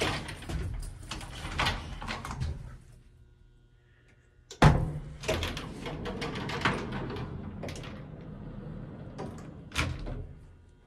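Metal wraparound scissor gate of an old Otis elevator car being slid by hand, its bars rattling and clanking, with one loud bang about halfway through and a sharp clack near the end.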